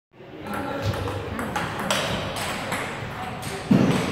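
Table tennis rally: the celluloid ball clicks sharply off paddles and the table about twice a second. A dull, louder thump comes near the end.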